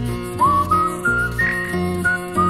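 A tune whistled over the instrumental backing of a children's song. The whistled melody comes in about half a second in with a quick scoop up, then climbs higher note by note.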